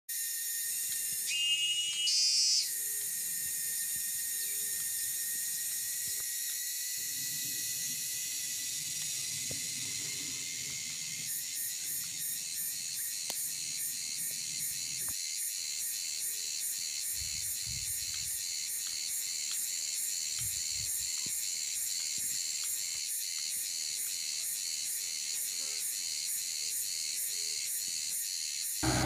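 Tropical insect chorus: a steady shrill high-pitched drone. A louder, higher call rises over it for about a second near the start, and a rapid pulsing rhythm joins about a third of the way in.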